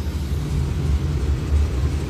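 A steady low rumble, with little above the bass.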